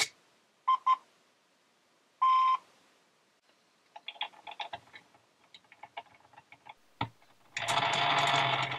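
Hobbywing QuicRun Fusion SE brushless motor and ESC powering up: a click, then two short start-up beeps about a second in and a longer beep just after two seconds. After a stretch of faint ticking, the Tamiya Scania's open plastic-geared gearbox starts whirring steadily near the end as the motor spins it, the gearbox making most of the noise while the motor itself is almost silent.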